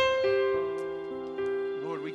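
Slow keyboard playing on an electric-piano sound. A chord is struck at the start and held while single notes change under it. A wavering voice comes in softly near the end.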